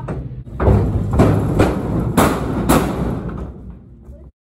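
Horse kicking the walls of a metal stock trailer: a run of loud bangs and rattling thuds, with about four heavy blows between one and three seconds in.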